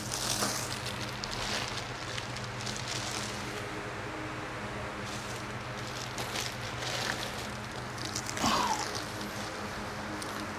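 A steady low machine hum, with a few light knocks and a brief squeak about eight and a half seconds in.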